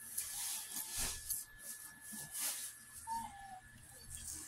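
Dog snuffling and sniffing right up against the microphone in a series of short breathy rushes, with a brief falling whine about three seconds in.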